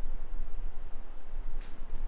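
A steady low rumble with a faint hiss over it, and a brief light tick or rustle near the end.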